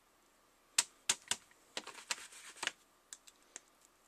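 Clear acrylic stamping block and clear photopolymer stamp being handled: a string of sharp clicks and taps, bunched in the middle, as the block is lifted off the cardstock and the stamp is peeled off the acrylic.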